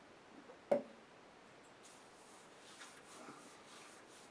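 A glass set down on a wooden box: one sharp knock with a short ring just under a second in, then faint rustling of hands.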